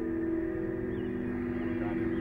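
Background music: a steady, sustained low chord held without a beat.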